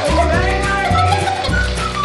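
Background music with a pulsing bass and a melody.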